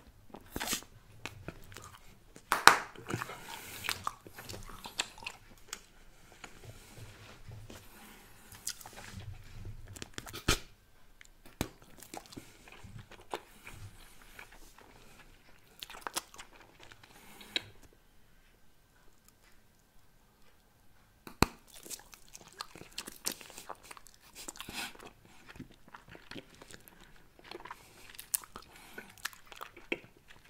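Bubblegum chewed right up against a microphone: irregular wet mouth clicks and smacks. The loudest comes about two and a half seconds in, and there is a pause of a few seconds past the middle.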